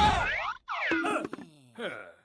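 Cartoon boing-style sound effects: springy, falling pitch glides, broken by a brief silence just over half a second in, then more falling glides and a tone that steps down in pitch near the end.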